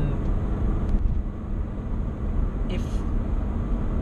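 Steady road and engine noise inside a moving car's cabin, a low rumble, with a brief hiss about three seconds in.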